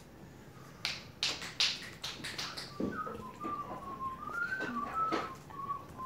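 A few short scratchy strokes, then a person softly whistling a wandering tune of held notes, stepping up and down, from about three seconds in.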